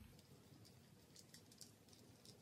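Near silence with a few faint, irregular ticks from a handheld dermaroller being rolled back and forth over the skin of the forearm.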